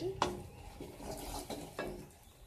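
A spatula stirring and scraping in a stainless steel kadai, knocking sharply against the pan once just after the start and again near the end, over a faint sizzle of turmeric-spiced food frying in oil.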